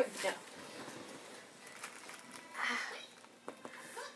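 Cardboard box flaps and plastic-wrapped clothing rustling briefly as a shipping box is opened up, about two and a half seconds in, with a few faint handling clicks after.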